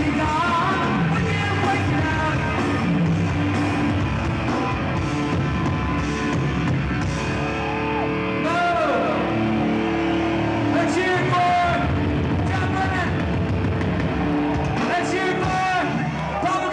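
A hardcore punk band playing live at full volume: distorted electric guitar, bass and drums, with a man's vocals bursting in over the band at moments.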